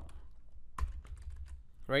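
Computer keyboard typing: a few scattered, separate keystrokes as a line of code is finished.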